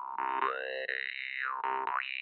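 Glazyrin Compass vargan (Russian jaw harp) being played: a steady buzzing drone with a bright overtone that slides up and back down once as the player's mouth shapes it. Several plucks of the reed sound in the second half.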